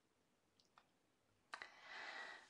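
Near silence, with a few faint clicks. About one and a half seconds in comes a sharper computer-mouse click, followed by a short hiss.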